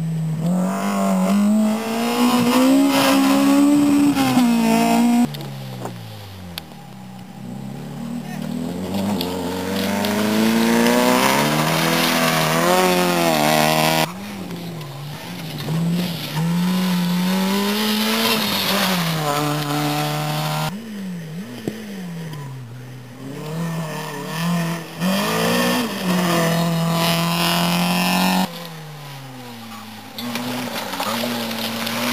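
Rally cars driven flat out on a special stage, one after another. Each engine revs high as it accelerates past, its pitch climbing and dropping back at gear changes and lifts. The sound breaks off abruptly between cars several times.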